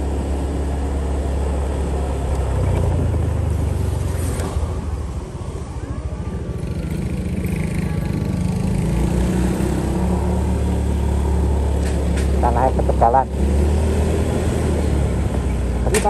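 Motorcycle engine running steadily as it carries the rider up a village road. The engine eases off around five seconds in and then builds again, and a brief voice comes in near the end.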